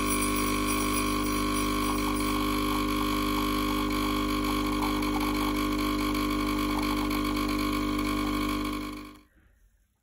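Home espresso machine pulling a shot, its pump buzzing loud and steady as the espresso pours, fading out about nine seconds in.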